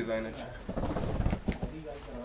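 Fabric rustling and flapping as a folded printed cloth is shaken out and spread over a counter by hand, with a few sharp clicks about a second and a half in.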